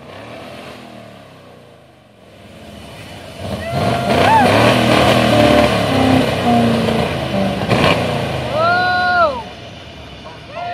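Rat rod engine revved hard to fire its exhaust flamethrower: a loud rumbling, crackling run starting a few seconds in and lasting about six seconds, with a sharp bang near the end. People whoop and shout over it.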